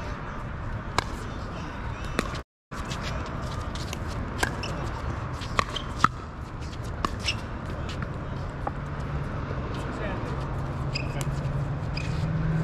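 Pickleball paddles hitting a hollow plastic ball in a doubles rally: a string of sharp pops, about eight over several seconds, the loudest about six seconds in, over steady outdoor background noise. A low steady hum builds near the end.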